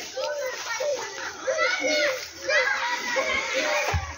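Several children's voices chattering and calling out at once, overlapping, with no clear words.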